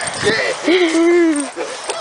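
A boxer puppy gives one long whine in the middle while playing with an adult boxer, over a person's laughter.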